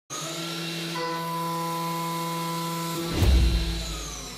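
Intro music sting: a chord of steady held electronic tones, with more tones joining about a second in, then a deep booming hit with a swoosh a little after three seconds.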